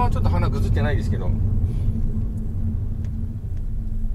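Steady low rumble of a Honda Odyssey RB3 minivan cruising, with road and engine noise heard from inside the cabin. The rumble eases a little near the end.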